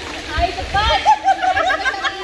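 Several women's voices calling out and laughing over one another, with runs of short, quickly repeated syllables.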